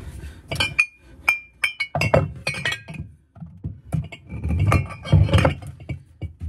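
Glass wine bottles clinking against one another as they are handled and shifted, in two bouts of sharp ringing clinks mixed with duller knocks.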